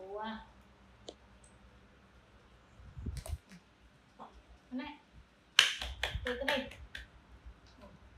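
A short vocal call right at the start, then a cluster of sharp clicks or snaps with brief voice sounds among them about two thirds of the way in, the loudest part.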